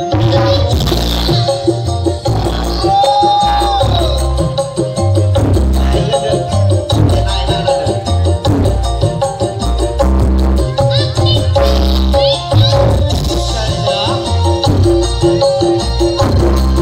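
Loud music with a heavy, pulsing bass, played at high volume through a large truck-mounted loudspeaker stack.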